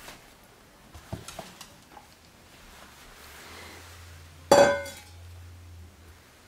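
A stainless steel dog bowl clanks once, a sharp metallic strike that rings briefly, preceded by a few light clicks.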